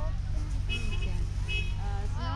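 Steady low outdoor rumble with faint distant voices, and two short high-pitched beeps about a second apart.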